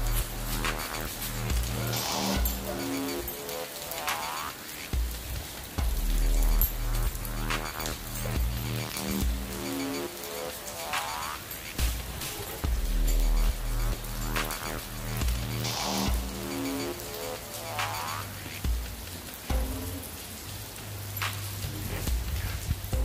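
Background music: held chords that change every second or so over a deep bass, with rising sweeps every few seconds.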